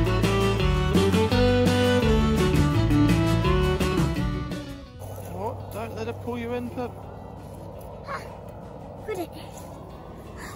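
Background music with plucked acoustic guitar that cuts off about halfway through, giving way to outdoor live sound: a steady rushing haze with a few short, brief cries from a voice.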